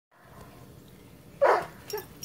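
A dog barks once, sharply, about one and a half seconds in, with a smaller sound just before the end.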